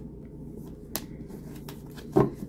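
A tarot deck being shuffled by hand: faint card rustle with scattered soft clicks, and one sharper snap of cards about a second in.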